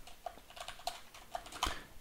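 Computer keyboard typing: a run of light, irregular keystrokes, with one louder key strike near the end.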